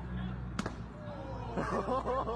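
A single sharp knock about half a second in, a brief impact, followed near the end by people shouting excitedly, over a steady low hum.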